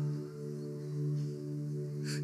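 Soft background music: a sustained, held chord with a steady low tone, swelling gently about a second in.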